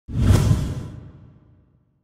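Intro whoosh sound effect that starts suddenly and fades out over about a second and a half.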